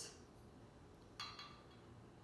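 Near silence with a single light clink about a second in, as a glass liquor bottle and a metal jigger are handled on the counter just before the pour.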